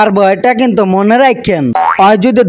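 A man's dubbed voice speaking, then about one and a half seconds in a comic sound effect: a quick pitch glide sliding sharply down and then sweeping back up.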